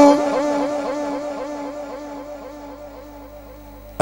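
A man's drawn-out chant of 'Allah' through a PA system with a heavy echo effect. The held note and its repeating echoes fade away steadily over about four seconds.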